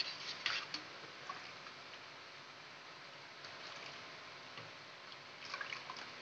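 A steel spoon stirring thick custard sharbat in steel bowls: faint wet stirring, with a few brief knocks of the spoon against the bowl in the first second and again shortly before the end.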